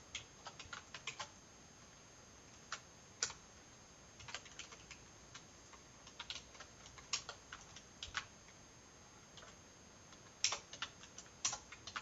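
Faint typing on a computer keyboard: sparse, irregular key clicks in short clusters with pauses between.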